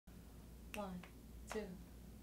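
Two finger snaps about three quarters of a second apart, each landing with a spoken count of "one, two", setting the tempo for an a cappella song.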